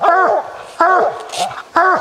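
A coonhound barking treed, baying three times about a second apart with each bark rising and falling in pitch: the sign that it has a raccoon up the tree.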